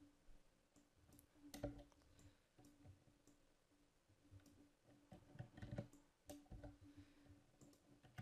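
Faint, scattered clicks of a computer mouse and keyboard over a low steady hum, with the louder clicks about one and a half seconds in and again around six seconds.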